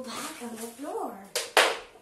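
A woman's playful wordless vocalising, her voice gliding up and down in pitch, followed about one and a half seconds in by a brief, loud rush of hissing noise that fades away.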